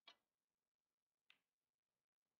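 Near silence, with two very faint clicks about a second apart: a snooker cue tip striking the cue ball, then the cue ball clicking into a red.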